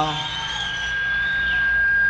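Microphone feedback through the stage PA: a steady high-pitched whistle that grows louder, with a fainter wavering tone above it.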